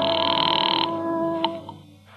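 A sustained brass music chord fading out under a telephone bell ringing. The ring cuts off abruptly just under a second in, followed by a sharp click like a receiver being picked up.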